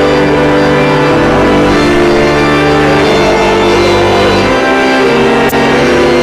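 Church organ playing a hymn in long held chords, with singing voices along with it. A single sharp click comes about five and a half seconds in.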